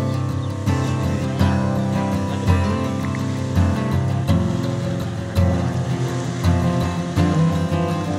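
Background music with sustained chords and a steady beat.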